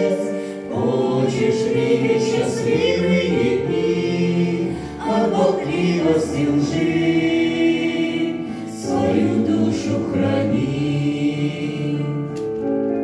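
Small mixed group of adult men and women singing a hymn in harmony, with piano accompaniment. Long held notes in phrases about four seconds long, each ending in a brief dip before the next begins.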